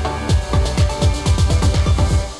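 Electronic background music with a driving beat, the drum hits coming faster and faster in a roll through the second half.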